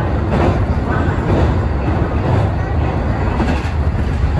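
Kintetsu express electric train running at speed, heard from inside the front car: a steady low rumble of wheels on rail with a few brief clicks from the track.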